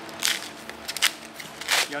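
White paper wrapping crinkling and rustling in a few short bursts as it is pulled off a small metal part by hand.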